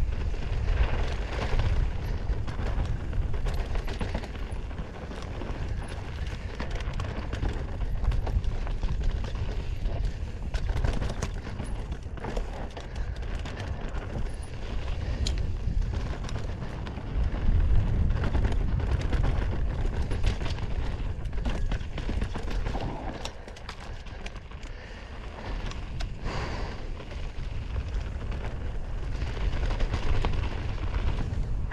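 Mountain bike ridden fast down dirt singletrack, heard from a camera on the rider: a heavy rumble of wind on the microphone and tyres on dirt, with frequent sharp clicks and knocks from the bike rattling over bumps. It eases for a couple of seconds near the end, then picks up again.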